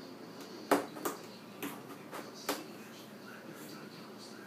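Cardboard box knocking and crackling as a cat moves and paws inside it: about five sharp knocks in the first two and a half seconds, the first the loudest.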